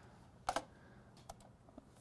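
A few isolated keystrokes on a computer keyboard, short sharp clicks with the loudest about half a second in, over quiet room tone.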